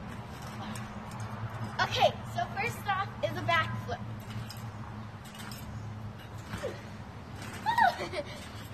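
Backyard trampoline being bounced on, with faint knocks from the mat and springs, over a steady low hum.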